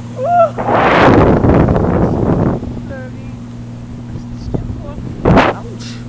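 Wind buffeting the camera microphone in a loud gust of about two seconds, then a second short blast near the end, over a steady low hum.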